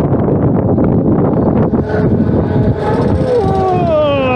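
Wind rushing over the camera microphone as a Flying Scooters ride car swings round at speed. Near the end a person's drawn-out cry falls in pitch.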